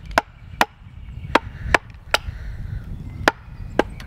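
A wooden batoning stick striking the spine of a belt knife, driving the blade down into a section of sweet chestnut to split it: about seven sharp knocks at uneven intervals.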